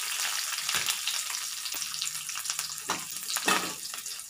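Garlic cloves, ginger and lentils sizzling in hot oil in a metal pan, with a steady hiss. A perforated steel ladle stirs them, scraping the pan a few times.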